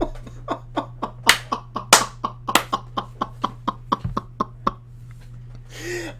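A man laughing hard in a rapid string of short, breathy bursts, about three or four a second, dying away about five seconds in. A steady low electrical hum runs underneath.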